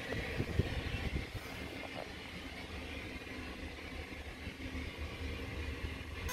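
Faint steady background rumble and hiss, with a thin hum running through it and a few soft knocks in the first second or two.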